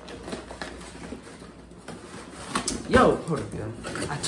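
Fingers picking and scratching at stubborn packing tape on a cardboard box, with soft scuffs and clicks of the box being handled. A louder wordless straining voice breaks in about two and a half seconds in.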